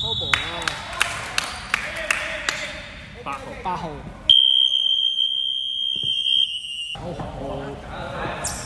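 A basketball bouncing on a wooden hall floor, several knocks in a row, with players' voices. About four seconds in, a steady high-pitched buzzer sounds for nearly three seconds and then stops suddenly.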